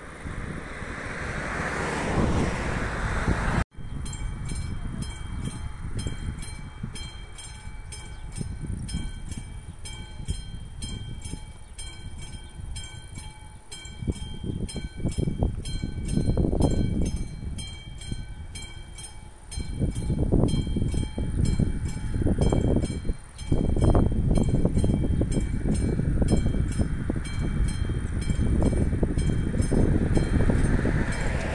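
Classic mechanical bell of an AŽD 71 level-crossing warning system ringing in rapid, evenly repeated strokes, starting a few seconds in. It signals that the crossing has activated for an approaching train, just before the barriers lower. Gusts of wind hit the microphone in the second half.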